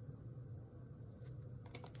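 Quiet room with a steady low hum, and a few faint clicks near the end as tarot cards are handled.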